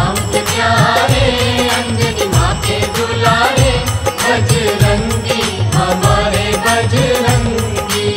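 Hindi devotional song (a Hanuman bhajan): a sung melody over a steady drum beat and backing instruments.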